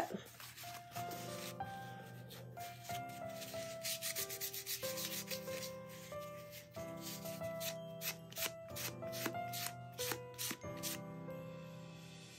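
Paper towel rubbed in quick, repeated strokes over a cast epoxy resin piece, wiping wet paint off its raised filigree, under quiet background music.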